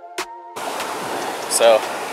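Electronic background music that cuts off abruptly about half a second in, replaced by the steady rush of ocean surf breaking close by.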